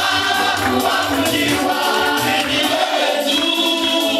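Gospel worship song: a congregation singing together over live band accompaniment with a pulsing bass line.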